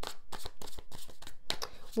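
A deck of tarot cards being shuffled by hand: a quick, irregular run of card clicks and flutters.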